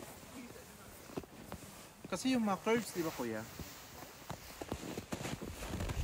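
A person talking briefly some way off, quiet against faint outdoor background, with a few scattered soft clicks.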